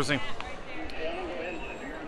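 Faint background chatter of other people talking in a shop, just after a man's close voice trails off, with a few dull low thumps.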